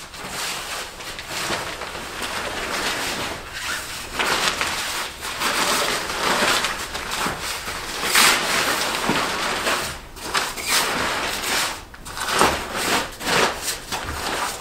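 Pool table cover being pulled off the table, bunched up and folded by hand: a continuous rustling and crinkling of the cover's material that swells and dips with each handful.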